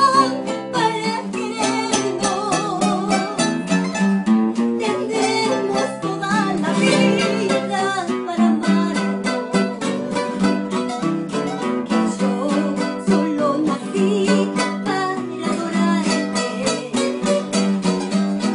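A pasillo played on three acoustic guitars, plucked and strummed, with a woman singing over them with vibrato.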